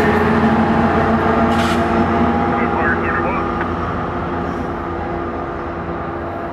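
Tri-Rail commuter train passing close by, its diesel locomotive's engine running with a steady low hum under the rumble of the cars on the rails, fading gradually in the second half as the train draws away.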